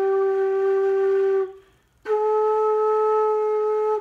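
Homemade six-hole flute playing two held notes up the F major scale: a steady G for about one and a half seconds, then after a short pause a steady A. Both notes match their pitch on the tuner.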